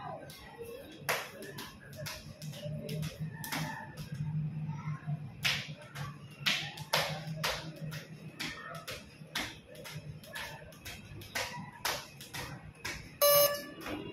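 Skipping rope slapping a concrete floor in a quick, steady rhythm, about two slaps a second, over a low steady hum. The slapping stops near the end, and then comes a short, loud beep.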